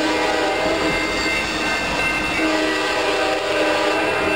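Passenger train horn held in a steady chord as the train runs past, over the low rumble of the train.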